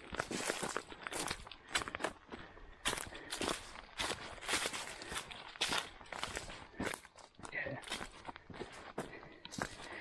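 Footsteps of a hiker walking at a steady pace on a dirt track strewn with dry leaves, about two crunching steps a second.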